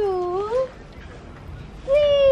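A high, sing-song voice drawing out the counting word "two", its pitch dipping and then rising; near the end a second long, held call begins.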